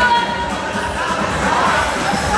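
Music with singing, played over the chatter of a crowd in a large hall.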